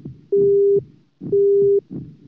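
Heart-monitor beep sound effect: a steady mid-pitched electronic tone about half a second long, sounding twice, about once a second, with low thumps between the beeps.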